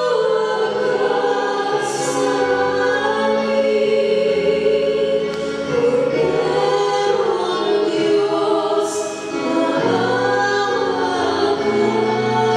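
A choir singing a slow hymn in long held notes.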